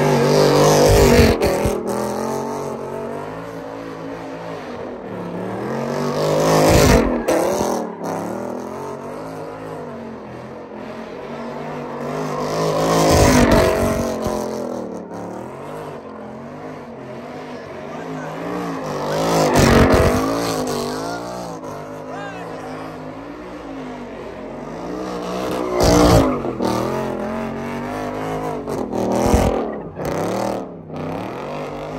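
A Ford Mustang doing donuts, its engine held at high revs with the rear tires spinning and squealing. The engine note wavers up and down and swells loudest each time the car swings round past, about every six seconds.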